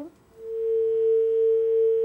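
A steady tone at one pitch on a live phone-in caller's telephone line, swelling in about half a second in and then holding loud and unchanging.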